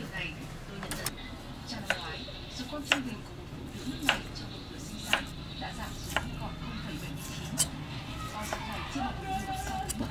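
A large knife slicing roast pork (xá xíu) into thin slices on a round wooden chopping board. The blade knocks sharply on the wood about once a second.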